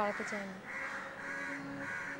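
Crows cawing repeatedly, a harsh call about every half second, over a low steady held tone.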